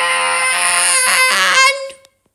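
A person's voice holding one long, loud cry at a steady pitch, breaking off shortly before the end.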